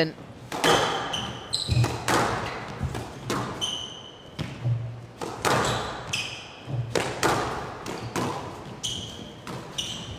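Squash ball repeatedly struck by rackets and hitting the walls of a glass-walled court, a quick series of sharp cracks about once a second, during a fast rally. Short high squeaks of court shoes on the floor come between the shots.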